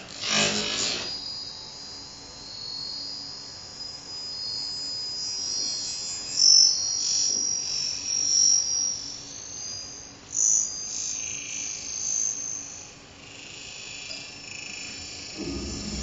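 Live electronic music: thin, high-pitched twittering tones and chirps that sound insect-like, played from handheld gestural controllers. A short, fuller burst opens it, and a low, dense sound swells in near the end.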